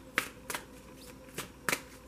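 A deck of oracle cards being shuffled by hand, hand over hand: a few sharp, irregularly spaced slaps and flicks of cards against each other.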